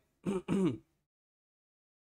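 A man clearing his throat: two short vocal sounds close together in the first second.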